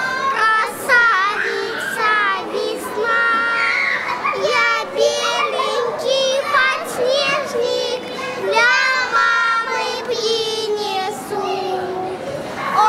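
Three young children singing a song together.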